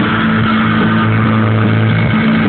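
Loud live rock music with distorted guitars holding low notes, the chord changing about a second in.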